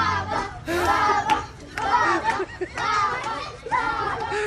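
A group of children's voices calling out and talking over one another, one burst after another.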